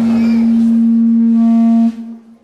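A loud, steady low tone held flat without wavering, cut off sharply just before the end: microphone feedback howling through the sound system.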